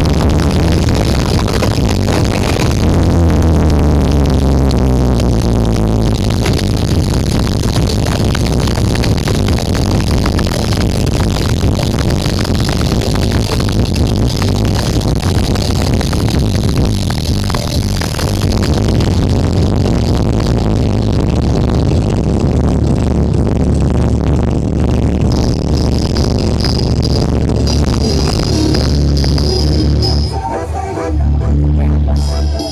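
Electronic dance music played loud through a towering stack of outdoor 'sound horeg' speaker cabinets during a sound check, with heavy, steady bass.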